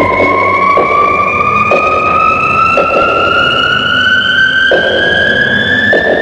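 Electronic synthesizer tone gliding slowly and steadily upward in pitch over a hissing electronic wash, with a few irregular hits, part of sci-fi space music.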